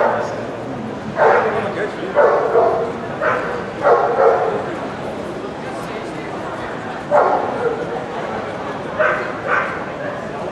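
A dog barking repeatedly in short, sharp barks, singly and in pairs about a second apart, with a gap of a few seconds partway through.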